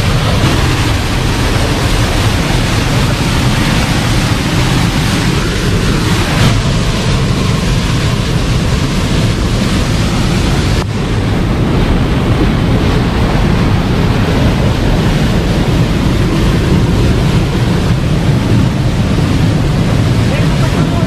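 Loud, steady rush of water from a waterfall and the fast river below it.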